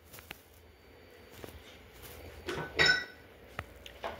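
A person drinking au jus straight from a small soft rubber cup: faint handling clicks, then a short sip and swallow about two and a half to three seconds in.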